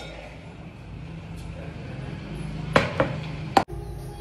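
A few sharp metallic knocks from a stainless-steel mixer-grinder jar and its lid being handled, three in all near the end, over a low steady hum.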